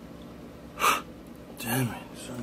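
A man's sharp, loud breath about a second in, followed near the end by a short voiced vocal sound.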